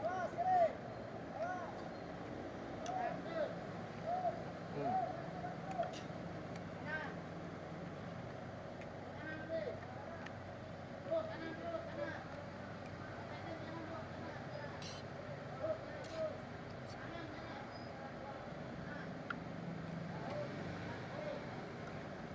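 Roadside street ambience: a steady traffic hum with indistinct voices, mostly in the first few seconds, and a few light clicks of a metal fork against a plastic plate.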